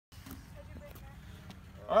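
Low, steady outdoor rumble with a few faint ticks, then a man's voice starting near the end.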